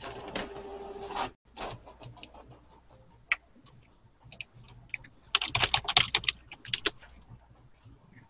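Computer keyboard typing: scattered key clicks, then a quick run of keystrokes about five seconds in. A short noisy hum fills the first second.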